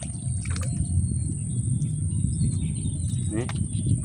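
Outdoor ambience: a steady low rumble with faint bird chirps in the middle, and a few light clicks.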